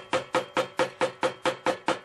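Chisel being tapped into a corner of a timber joint with quick, evenly spaced light knocks, about five a second, each with a short ring; the tapping stops near the end.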